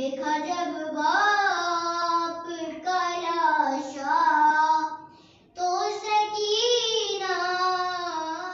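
A young girl chanting a noha, a Shia mourning lament, unaccompanied, in long held, wavering lines, with a short pause for breath about five seconds in.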